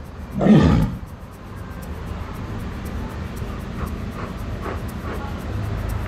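A walrus giving one short, loud call about half a second in, its pitch falling steeply.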